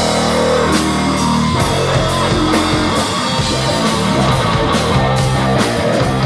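Live rock band playing: electric guitar, electric bass and drum kit, with regular cymbal strokes over a steady, loud band sound.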